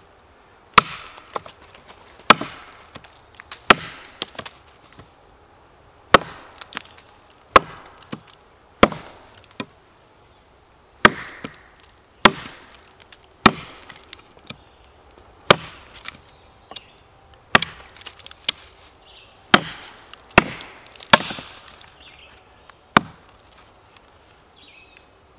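Gränsfors Bruk Outdoor Axe chopping through a two-to-two-and-a-half-inch branch of seasoned maple: about sixteen sharp chops, roughly one every second and a half.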